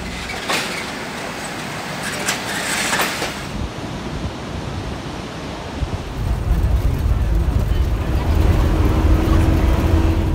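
Background hiss with a few short clicks and faint voices, then, from about six seconds in, the deep steady rumble of a vehicle driving on a dirt road, heard from inside the cabin.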